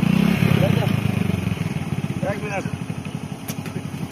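A stationary commuter train's machinery running with a fast, steady low throb, loudest at the start and easing slightly. Faint voices can be heard above it.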